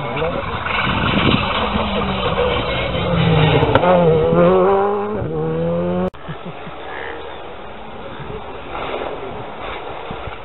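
Rally car engine at speed on the stage, its pitch dropping and climbing again as the revs change, loudest about four seconds in. It stops abruptly about six seconds in, leaving quieter outdoor sound.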